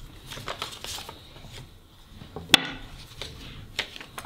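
Quiet paper handling: light rustles and small taps as a lottery ticket is slid out of a paper envelope and the envelope is set down on a table, with one sharp click about two and a half seconds in.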